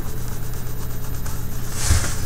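White coloured pencil scratching on paper in quick, even strokes, over a steady low hum.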